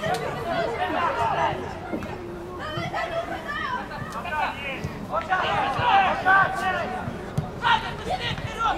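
Several voices shouting and calling out across a football pitch during play, overlapping one another with short pauses between.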